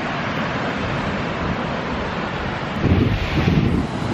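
Wind blowing on the microphone over surf breaking on a sandy beach. Stronger gusts buffet the microphone with a low rumble about three seconds in.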